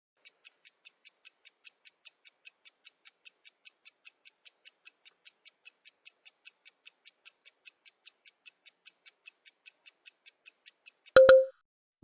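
Countdown-timer sound effect: a clock ticking quickly and evenly, about four to five ticks a second, for about ten seconds. It ends in a short beep near the end that signals the time is up.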